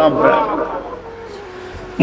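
A man preaching into a microphone, his voice trailing off about a second in, followed by a quieter lull with a faint steady tone until he speaks again.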